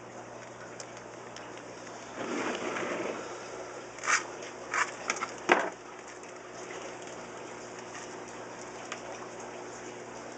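Water splashing and pouring for about a second, then a few short sharp rustles or knocks, over a steady low hum.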